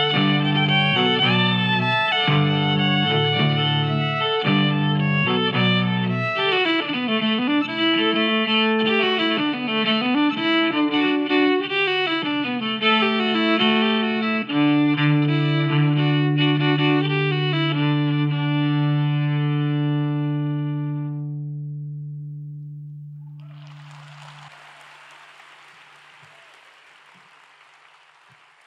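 Six-string electric cello played with a bow through effects and live loops: a pulsing low riff, then swooping bowed notes that slide up and down over the layers, ending on a long held low note as the music fades out. Soft applause begins near the end.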